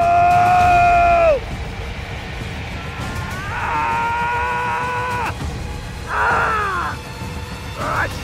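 A man screaming in pain as a tarantula hawk stings his forearm: three long, high cries, each dropping in pitch as it trails off, the last one shorter.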